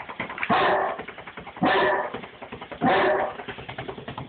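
Bullmastiff barking: three barks about a second apart.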